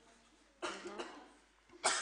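A person coughs: a brief throaty sound a little over half a second in, then a sharper, louder cough near the end, over quiet room tone.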